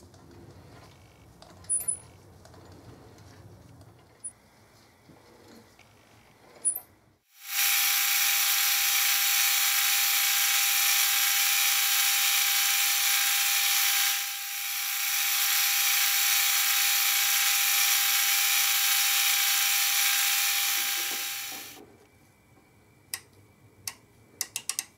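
Metal lathe turning the bearing journals of a steel shaft: a loud, steady cutting hiss with a constant whine running through it. It starts about seven seconds in, dips briefly near the middle, and stops shortly before the end. Before it there is only a faint low hum and a few clicks.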